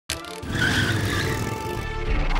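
Tyres skidding with a high screech, mixed with music, starting suddenly just after the opening.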